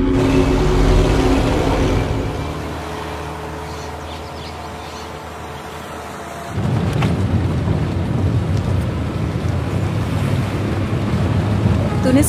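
A steady low drone fades over the first few seconds. About halfway through, the constant low rumble of a bus's engine and road noise, as heard from inside the cabin, starts abruptly.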